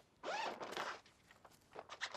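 Clothes being pushed and stuffed into an open suitcase: a rustling burst of fabric handling in the first second, then fainter handling sounds near the end.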